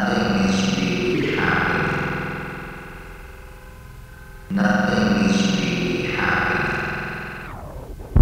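Music: a distorted, effects-laden guitar plays a sustained chord that rings and slowly fades. It strikes a second chord about halfway through, which fades the same way.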